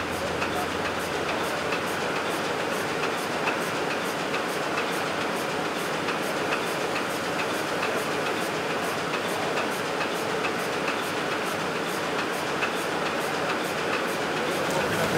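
Sheet-fed offset printing press running, a steady mechanical noise with a regular clack about three times a second as the sheets feed through.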